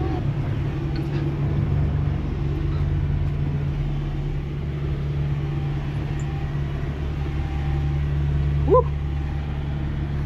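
Semi truck's diesel engine running steadily at low speed, heard from inside the cab, as the truck creeps through a tight squeeze. A short "woo!" shout comes near the end.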